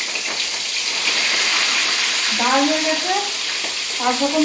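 Hot oil sizzling steadily in a kadai as food fries, a continuous hiss.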